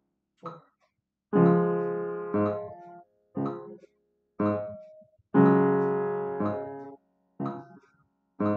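Piano duet accompaniment in D-flat major, chords played at a slow, steady tempo of about one per second. Some chords are held for about two beats, and each dies away before the next is struck.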